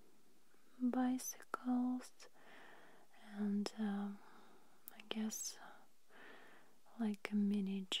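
A woman's soft, whispery voice in short, separate utterances, with a few small clicks between them.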